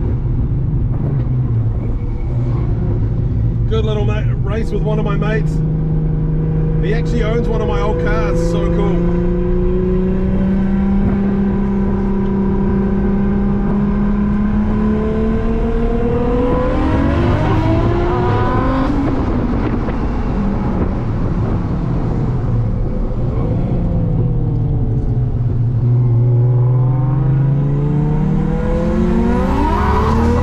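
Car engine heard from inside the cabin while lapping a circuit: the engine note climbs slowly through a long pull for about a dozen seconds, drops away, then sinks and climbs again near the end. Short crackly bursts come in around four and eight seconds in.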